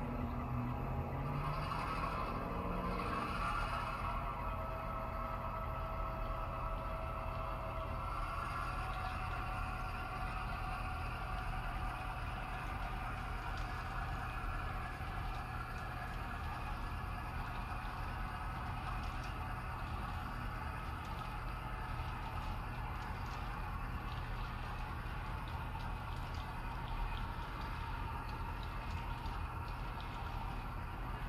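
HO scale model freight train rolling past on the layout's track: the steady running noise of the cars' wheels on the rails.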